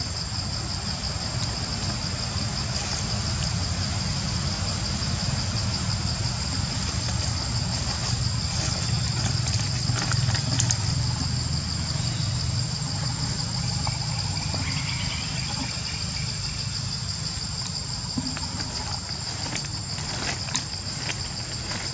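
Steady outdoor background noise: a constant low rumble under a continuous high-pitched drone, with a few faint clicks about halfway through.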